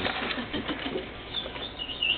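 Rustling and crinkling of gift packaging as it is handled and opened.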